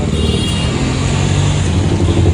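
Road traffic on a city street: a steady low hum of passing motor vehicles' engines.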